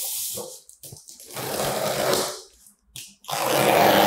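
A cardboard shipping box's packing tape being cut open with a utility knife: three long scratchy swipes of about a second each, with short pauses between them.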